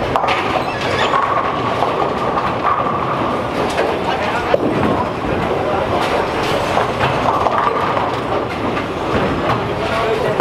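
Bowling alley ambience: bowling balls rolling along the wooden lanes in a steady rumble, with a few short, sharp pin crashes and a murmur of voices behind.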